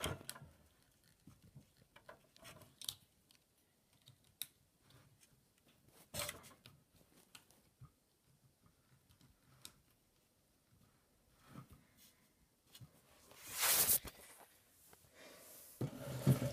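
Faint scattered clicks and handling noises as two 12-volt sealed lead-acid batteries are linked together with a connector cord, with a rustling scrape about six seconds in and a louder one, under a second long, near the end.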